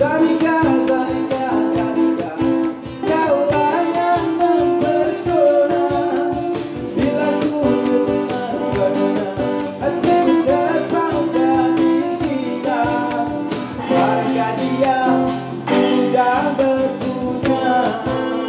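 Live acoustic band music: a steel-string acoustic guitar strummed in a steady rhythm, with a singer and a tambourine.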